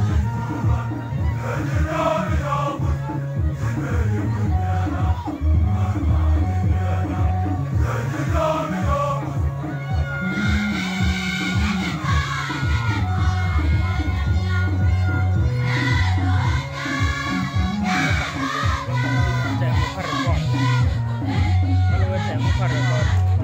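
Large choir singing a Nuer gospel song over a steady rhythmic beat, with the voices growing stronger and higher about halfway through.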